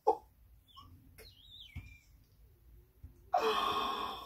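A woman's wordless cooing and gasps rather than speech: a short vocal sound at the start, faint high gliding sounds in the middle, then a loud drawn-out 'ooh' from about three seconds in.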